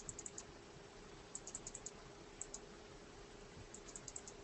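Faint typing on a computer keyboard: four short bursts of quick keystrokes, over a low steady hum.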